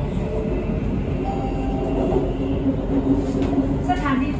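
BTS Skytrain electric metro train running: a steady rumble with a humming motor whine that grows stronger in the second half.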